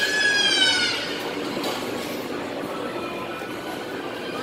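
A child's high-pitched squeal lasting about a second, then the steady hubbub of a busy indoor hall.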